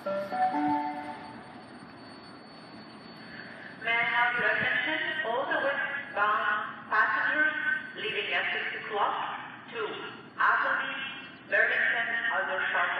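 Station public-address system: a short chime of a few steady notes, then from about four seconds in a recorded announcement over the platform loudspeakers, sounding thin and tinny.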